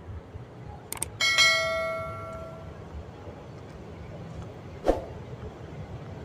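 A click followed by a bright bell ding that rings out and fades over about a second and a half: the sound effect of a YouTube subscribe-button and bell animation. A single short knock comes near the end.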